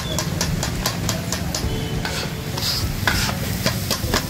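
Metal spatulas striking a flat iron griddle in a rapid, even clatter, about five strikes a second, as kothu parotta is chopped and tossed, over the sizzle of food frying on the hot plate.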